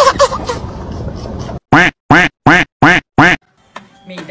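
A cartoonish animal-call sound effect: one short, honking call that rises and falls in pitch, repeated five times in quick, even succession with silence between. Laughter fades out just before it.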